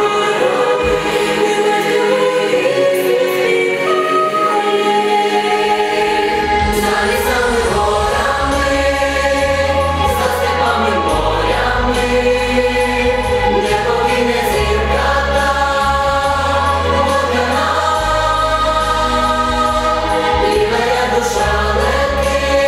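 Female solo voice and choir singing a folk song with instrumental accompaniment, in long, held phrases. A deep bass line comes in about a third of the way through.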